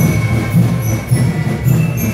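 School marching band (banda de guerra) playing: drums beating a steady pulse, with a held high tone and short, high, bell-like notes ringing above.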